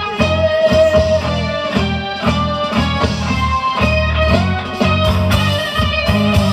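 A live rock band playing loudly through the stage sound system: electric guitars over bass and drums, with a sustained guitar line on top.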